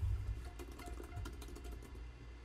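Typing on a computer keyboard: a quick, faint run of key clicks as a password is entered.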